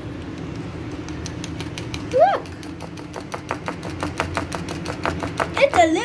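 Wire whisk beating pancake batter in a bowl, the wires clicking against the bowl several times a second. A brief voice sounds about two seconds in.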